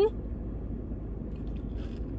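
Faint, soft mouth sounds of someone eating a spoonful of soft, melting ice cream, over a steady low hum inside a car. The eating sounds come as a few brief soft noises in the second half.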